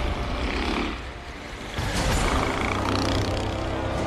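Street traffic with a heavy vehicle's engine running low and steady. The sound dips about a second in and grows louder again from about two seconds in.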